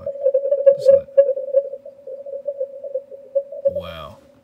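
A digital-mode signal coming through a Yaesu FTdx5000MP ham receiver set for CW, heard as one steady warbling tone that chops rapidly up and down in level.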